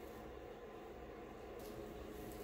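Faint room tone with no distinct sound.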